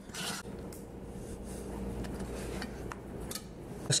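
Faint scraping and a few light clicks of a spatula against an enamelware bowl as thick batter is scraped out into a cast iron Dutch oven, over a low steady background rumble.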